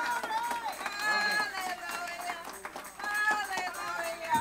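Voices of a church congregation calling out in praise, overlapping, drawn-out high exclamations, with scattered hand clapping.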